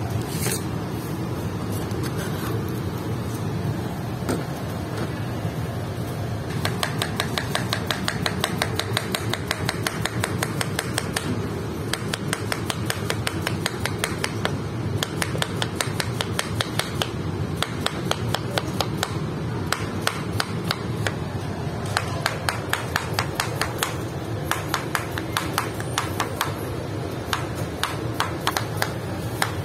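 Cleaver slicing a peeled cucumber on a plastic cutting board: quick, even knife strokes tapping the board several times a second. The strokes come sparsely at first, then in fast runs from about six seconds in, with a few short pauses.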